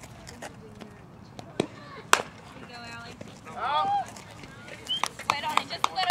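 Sharp smack about two seconds in, then voices shouting and calling out a few times over an open-air background.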